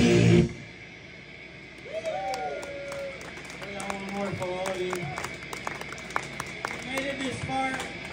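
A live rock song on electric guitar and drum kit ends, cutting off about half a second in, followed by scattered clapping from a small audience and people's voices.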